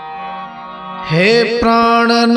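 Sikh devotional music (shabad kirtan): soft sustained tones for about the first second, then a louder melodic line slides up in pitch and settles into long held notes.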